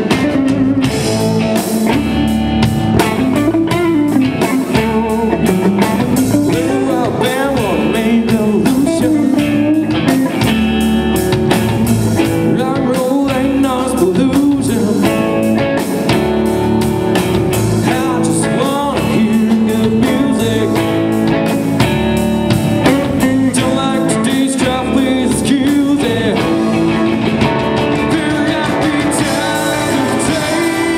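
Live rock band playing loud and steady: distorted Les Paul-style electric guitars through Marshall amplifiers over a drum kit, with a male voice singing.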